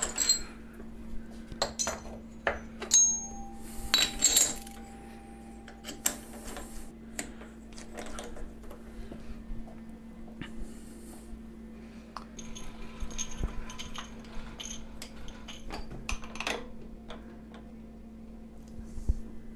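Small metal parts clicking and clinking as a dial test indicator and its holder are fitted to a milling machine spindle and adjusted, with a few short metallic rings a few seconds in. A steady low hum runs underneath.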